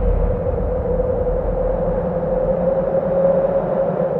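Cinematic trailer sound design: a sustained drone with one steady held tone over a low rumble, the rumble thinning near the end.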